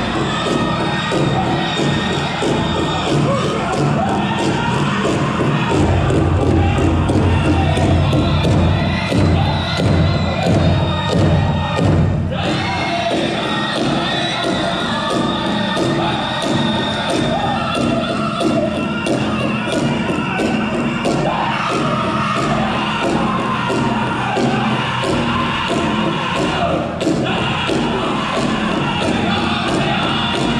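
Powwow drum group singing a fancy dance song over a big drum struck in a steady fast beat, with crowd noise from the arena mixed in.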